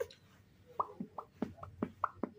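A person making quick, hollow clucking pops with the mouth, about four a second, each one dropping in pitch. The run starts just under a second in.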